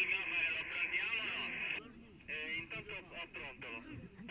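Several people shouting and calling over one another, their voices overlapping, with a brief lull about two seconds in.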